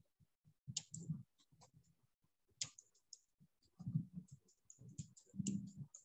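Computer keyboard typing: faint, irregular key clicks in short runs with pauses between them.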